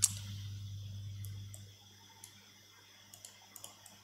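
Faint, scattered computer mouse clicks, a sharper one right at the start and several softer ones later, over a low hum that fades out within the first two seconds.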